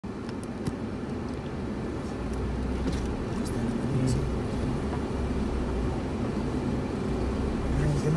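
Car driving slowly over a rough dirt track, heard from inside the cabin: a steady low engine and road rumble with a few light clicks.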